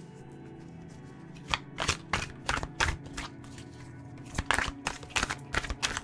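Tarot deck being shuffled by hand: a quick, irregular run of card slaps and clicks starting about a second and a half in. Background music with steady held tones plays underneath.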